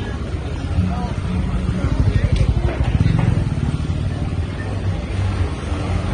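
A motor vehicle engine running at low speed with a low rumble that grows louder between about two and three and a half seconds in. Voices sound in the background.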